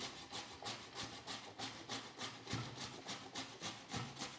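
Raw potato being grated on a stainless-steel grater: faint rasping strokes in a steady rhythm of about three a second.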